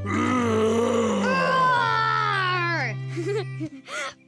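A cartoon lion character's voiced roar, one long falling growl lasting nearly three seconds, made to scare, over a steady low music note.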